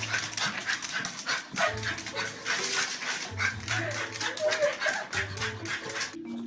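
A dog barking several times over background music with a bass line and a beat.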